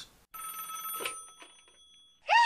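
A bell-like chime rings out about a third of a second in and fades away over about a second and a half.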